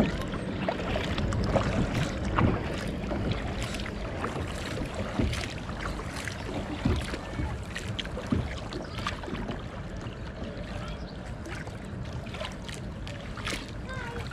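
Kayak paddle strokes: the blade dipping and splashing, with irregular drips and water lapping against the plastic hull. Wind rumbles on the microphone underneath.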